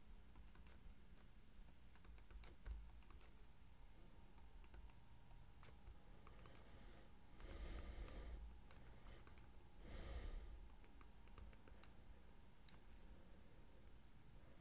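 Near silence with faint scattered clicks from handwriting with a stylus on a tablet, and two soft noises about a second long a little past halfway.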